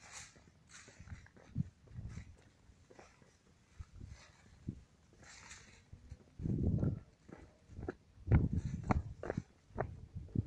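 Footsteps on a dirt trail and grass brushing past the walker, with short hissy rustles. In the second half come two loud low rumbling buffets, like wind or handling on a handheld camera's microphone, and a few sharp knocks near the end.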